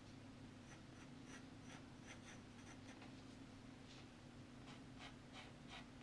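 Faint pencil strokes scratching on drawing paper, short light strokes scattered through and coming more often in the last couple of seconds, over a faint steady hum.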